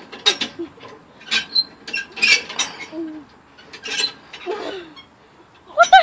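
Irregular clinks and rattles from the chain-hung handles of a playground overhead ladder as a child swings along them. Near the end a loud voice rises and falls in pitch, like a squeal or giggle.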